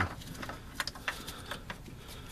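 A few light, irregular metallic clicks and taps from a hand tool and socket extension working against metal parts.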